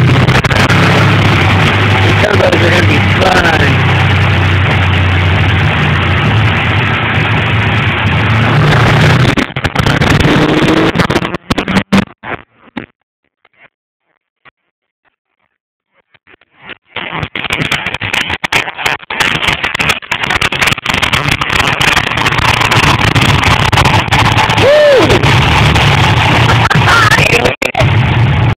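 Car of about 800 wheel horsepower running on a chassis dynamometer, loud and distorted, with a steady low engine note and a few brief whistling glides. About eleven seconds in the sound cuts out almost completely for some five seconds, then returns just as loud.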